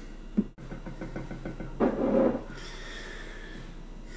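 Tabletop handling sounds: a ceramic bowl is set down on its plate, with a short knock about two seconds in.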